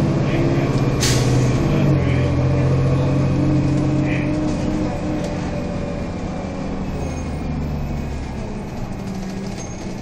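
City transit bus's engine and drivetrain running while the bus is under way, heard from inside the passenger cabin as a steady drone that eases off and grows quieter in the second half. There is one sharp click about a second in.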